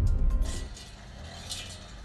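A TV news transition sting: a deep low boom fades out within the first second, with two airy whooshes over it, leaving a quieter background.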